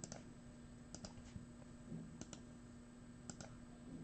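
Faint clicking at a computer, sharp short clicks mostly in close pairs about once a second, over a low steady hum.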